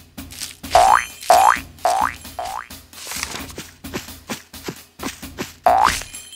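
Cartoon "boing" spring sound effects: four quick rising boings in the first half, then one more near the end.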